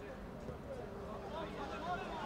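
Faint, distant voices calling out across an open football pitch during play, over a low outdoor background.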